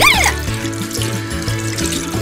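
Water running from a tap into a bathtub and filling it, a steady rush of water, over background music with a steady bass line. A short sung vocal glide trails off just at the start.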